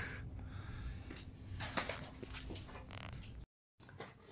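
Faint scraping and a few light knocks from handling, over a low steady hum; the sound cuts off abruptly near the end.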